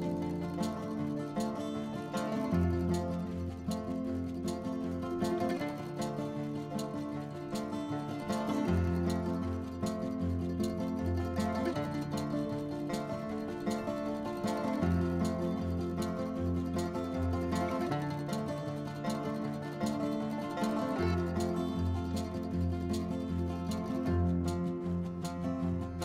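Instrumental background music led by plucked strings over a repeating bass line, at a steady level.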